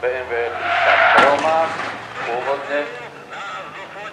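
A voice talking, with a faint steady low engine hum underneath and a brief noisy flare about a second in.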